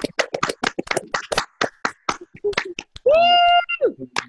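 Applause from many participants on a video call, heard as a choppy run of separate hand claps. About three seconds in, one voice gives a loud, held cheer that drops in pitch as it ends.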